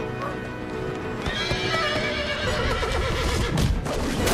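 A horse whinnying, a long wavering call that begins about a second in, over orchestral film score music.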